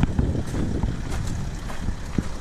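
Wind rumbling on the microphone, a steady low buffeting with a few faint clicks.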